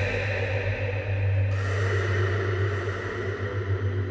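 Ambient electronic music played back from an Ableton Live session: a steady low drone with a hissing, cymbal-like wash of sound that swells in again about a second and a half in.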